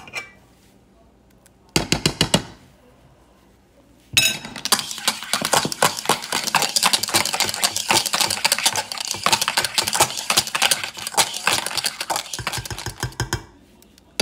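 Wire whisk beating egg yolks in a mixing bowl: a rapid, steady rattle of the wires against the bowl from about four seconds in until near the end, after a short clatter about two seconds in. The yolks are being tempered by whisking in spoonfuls of hot rice mixture.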